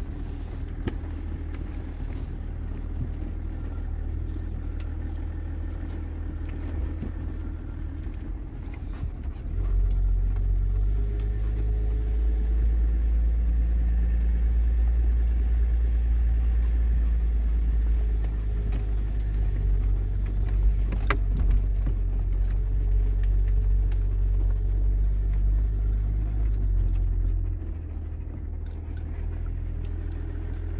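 Range Rover L322 driving slowly along a rough dirt track, heard from inside the cabin: a steady low rumble of the running gear, growing louder about ten seconds in and easing again near the end, with occasional light clicks and rattles.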